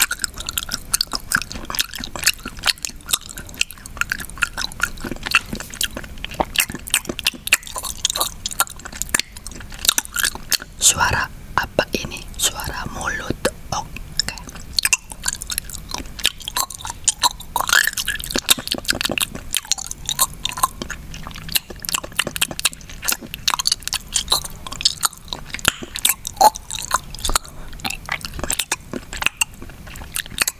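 Close-miked wet chewing and mouth sounds of someone eating mung bean porridge: a dense, irregular run of small clicks and smacks.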